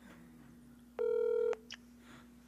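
A single telephone beep, about half a second long, a second in, followed by a short click: a phone line switching over to another call.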